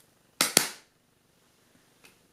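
Two sharp plastic snaps in quick succession about half a second in: the funnel lids of 23andMe saliva collection tubes being clicked shut, which releases the stabilising liquid into the spit sample.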